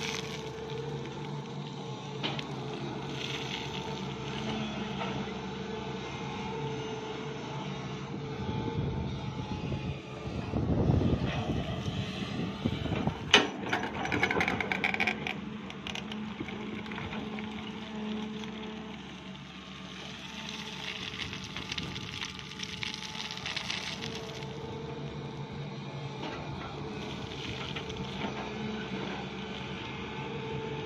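Sany crawler excavator's diesel engine running steadily with its hydraulics working as the bucket digs rocky soil. About ten seconds in comes a louder stretch of scraping and tumbling earth and stones, with one sharp knock in the middle of it.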